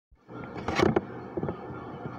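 A television playing a cartoon soundtrack, picked up by a handheld phone's microphone, with a few sharp knocks just before a second in.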